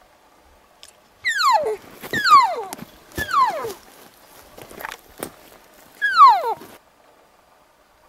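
Cow elk call blown in four mews: each is a descending squeal that slides from high to low in about half a second. Three come close together and one follows after a pause near the end, with a few faint clicks in between.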